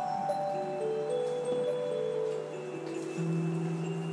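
Karaoke backing track playing a slow ballad intro: sustained keyboard notes and chords stepping through a gentle melody, with a deeper bass note coming in about three seconds in.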